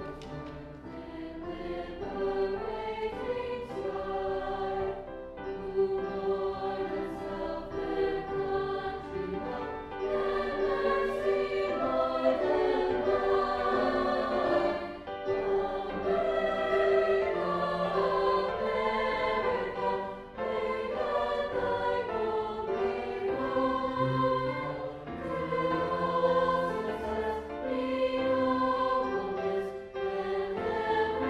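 High school choir singing, holding and changing notes continuously.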